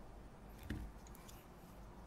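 Quiet handling of jig-tying tools and materials at a vise, with one soft knock a little under a second in and a few faint light clicks after it.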